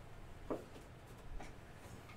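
Faint light clicks and taps from things handled on a tabletop: one sharper tap about half a second in and two lighter ones later, over a low room hum.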